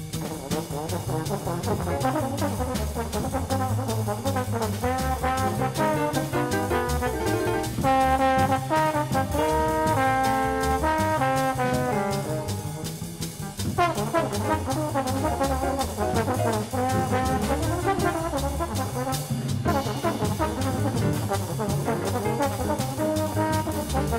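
Recorded jazz by a small band: trumpet and trombone playing over bass and drums, holding long notes together near the middle.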